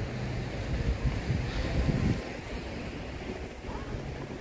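Low, steady rumble of sea surf, a little louder about one to two seconds in.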